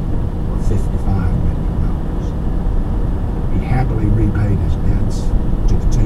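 Vehicle cruising at highway speed: a steady low rumble of engine, tyres and wind noise.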